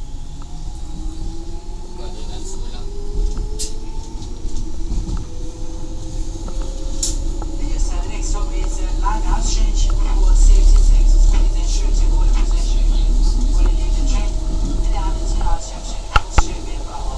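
Electric train running and picking up speed, its motor whine rising steadily in pitch over a low rumble from the wheels on the track, which grows louder toward the middle. Short clicks and knocks come from the wheels over the rails.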